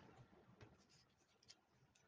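Near silence: room tone, with a couple of faint ticks.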